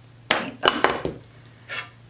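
Small painted wooden blocks knocking against one another and on a craft cutting mat as they are moved about: a quick run of four or five sharp knocks in the first second, then one softer knock near the end.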